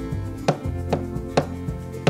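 Four sharp knocks about half a second apart, over background music with steady held tones.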